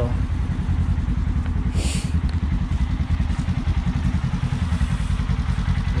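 Polaris RZR side-by-side's engine idling steadily, a low rumble with a fast, even pulse.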